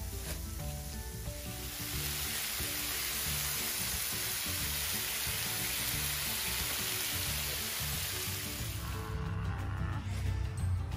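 Food sizzling on a hot flat barbecue griddle plate: a steady frying hiss that swells about two seconds in and stops near the end, over soft background music.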